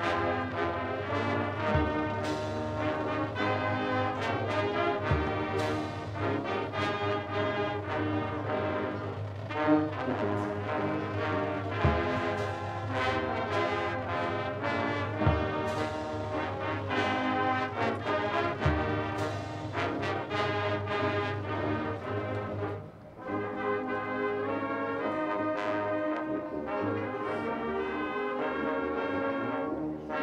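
High school marching band's brass section playing the national anthem in sustained chords, with a few low thumps and a short break between phrases about two-thirds of the way through.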